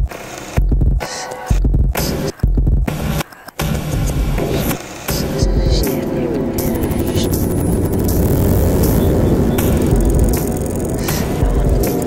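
Electronic music track. For the first three seconds or so it plays chopped, stop-start low hits about once a second, then it settles into a continuous dense texture with repeated falling pitch glides.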